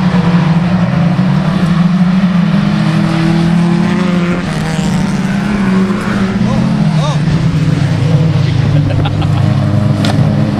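Engines of small stock hatchback autograss racing cars running hard and steady as they lap a dirt track, several engine notes overlapping in a loud, continuous drone.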